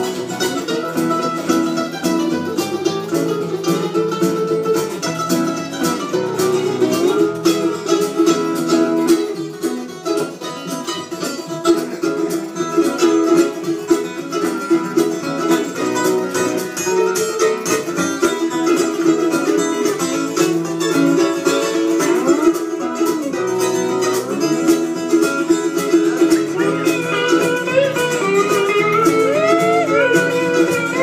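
Instrumental break played on acoustic plucked string instruments, guitar among them, with quick picked notes carrying the tune over steady chords.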